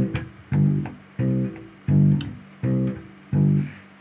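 Electric bass guitar playing a root-and-fifth line in short quarter notes, about one every 0.7 s, alternating between two pitches. Each note is muted before the next beat so it stops dead, a tight staccato feel that snaps into place.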